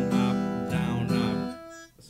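Steel-string acoustic guitar strummed: chords ring out, with a fresh strum about two-thirds of a second in. Then the strings are damped by hand and the sound falls away shortly before the end.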